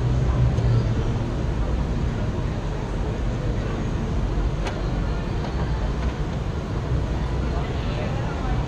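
Steady, loud outdoor street ambience: a low rumble with indistinct background voices, and a single sharp click a little past the middle.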